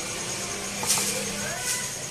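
Gas stove burner hissing steadily under an empty frying pan, with a single light click about a second in.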